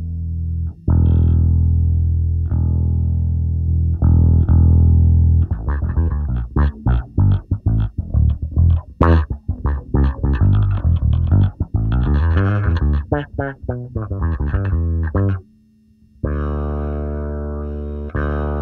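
Electric bass played through the Zoom B6's envelope filter, an emulation of an MXR envelope filter, giving an auto-wah sweep to the notes. A few long held notes come first, then a fast staccato funk line, a brief stop near the end, and another held note.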